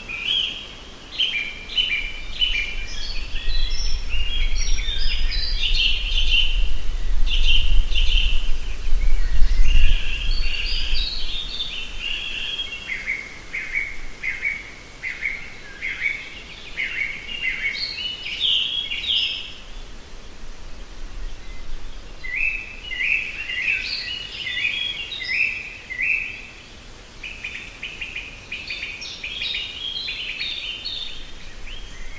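Songbirds singing, with quick repeated chirps and trills that carry on throughout. A low rumble swells during the first third.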